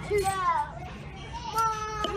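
A young child's high-pitched voice making wordless vocal sounds, with a gap in the middle and a held note near the end.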